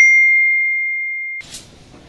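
A single ding sound effect: one bright, bell-like strike ringing on one clear tone that fades away over about a second and a half.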